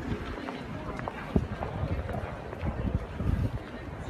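Footsteps of a group of people walking briskly on pavement, heard as irregular low thumps, with indistinct voices of people around.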